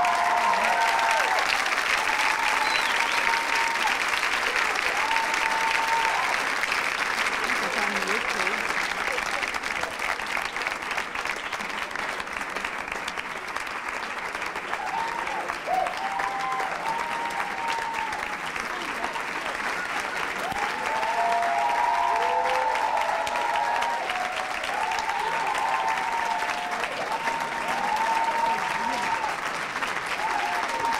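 A small group clapping steadily for the whole stretch, swelling again about two-thirds of the way in, with excited high voices calling out over it at times.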